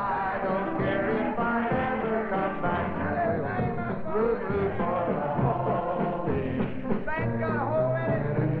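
Live country band music with many voices singing along, the studio audience joining in. The sound is thin and dull, with no highs, as on an old kinescope soundtrack.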